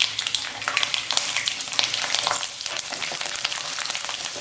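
Garlic cloves, dried red chillies and tempering seeds sizzling in hot oil in a pan, with steady hiss and many small crackles, as a spatula stirs them.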